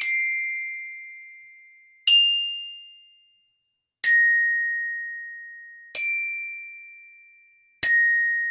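Glockenspiel (orchestra bells) played slowly with mallets: five single high notes at changing pitches, about one every two seconds, each struck sharply and left to ring and fade.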